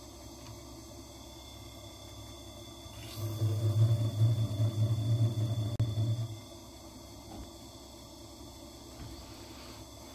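A faceting machine's lap spins with a quiet steady hum. About three seconds in, a gemstone is pressed onto the spinning lap to cut a facet, giving a louder, uneven low rubbing for about three seconds before it drops back to the hum.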